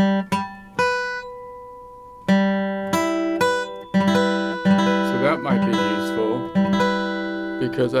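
Steel-string acoustic guitar playing about a dozen chords and notes one after another, each plucked and left to ring and fade. These are new chord voicings being tried out.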